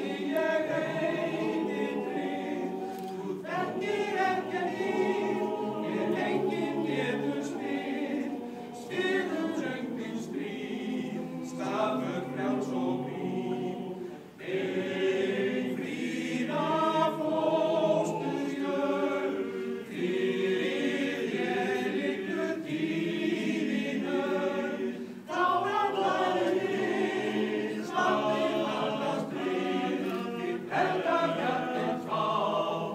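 A choir of mostly men's voices singing a cappella in Icelandic, in phrases with short breaks between them.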